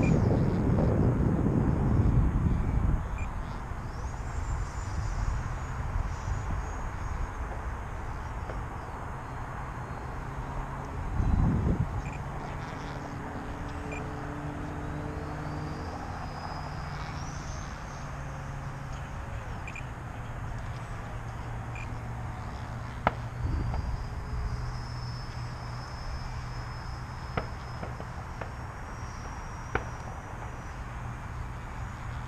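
E-flite F-4 Phantom II electric ducted-fan RC jet in flight, its high whine gliding up and down in pitch as it passes. Wind buffets the microphone in the first few seconds and again briefly near the middle, and a few sharp clicks sound in the second half.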